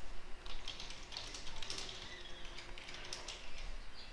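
Typing on a computer keyboard: a run of light, irregular keystrokes.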